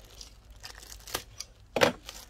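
Clear plastic packet of sanding discs crinkling as it is handled, with a louder crackle near the end.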